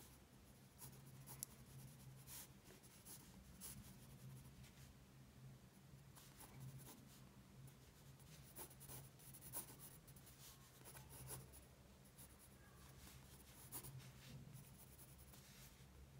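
Faint scratching of a graphite pencil sketching on sketchbook paper, in short, irregular strokes.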